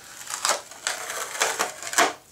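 Hands handling a small strip of masking tape on a servo extension lead: about four short crackling rustles.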